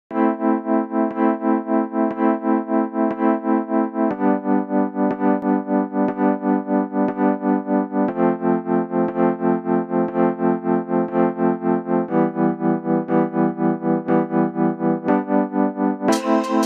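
Song intro of sustained synthesizer keyboard chords, pulsing several times a second, with the chord changing about every four seconds and a faint tick about once a second.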